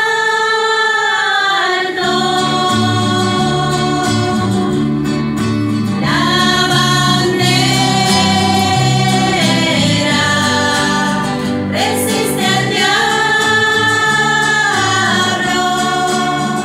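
A group of women singing a hymn together, with acoustic guitar accompaniment. The sung phrases end on long held notes, and the low accompaniment comes in about two seconds in.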